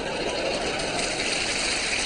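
Studio audience laughing and applauding: a steady wash of crowd noise.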